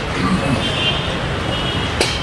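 Steady low rumble of road traffic with no speech over it, and faint high tones coming and going about half a second in and again near the end.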